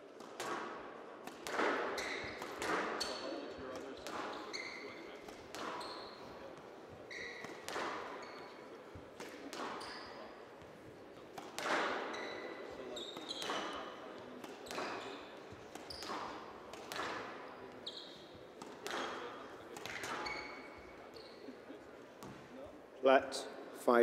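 Squash rally: the ball is struck by rackets and hits the walls of a glass court about once a second, each hit a sharp knock with a short echo. Brief squeaks of court shoes on the floor come between the hits.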